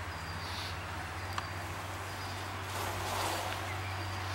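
Honeybee colony buzzing steadily in an opened top bar hive while a top bar is pried loose with a hive tool, with a faint click about a second and a half in.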